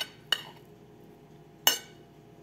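Metal fork clinking against a ceramic dinner plate: short, sharp ringing taps, one just after the start and another near the end.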